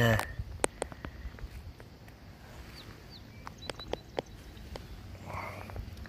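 Wind rumbling on the microphone, with scattered light clicks and rustles of footsteps on dry, tilled soil.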